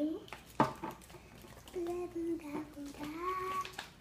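A young girl's voice, drawn out and wordless, for about two seconds in the second half, holding nearly one pitch and rising slightly near the end. A single short knock sounds about half a second in.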